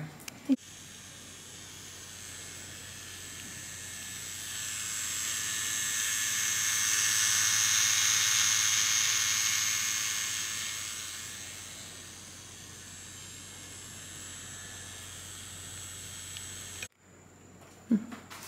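Electric tattoo machine running on the skin, a steady high buzz that swells louder mid-way and fades back, then cuts off abruptly near the end.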